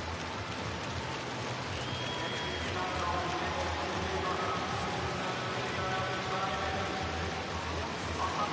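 Steady din of a large stadium crowd, a dense wash of voices and noise, with a brief high whistle-like tone about two seconds in.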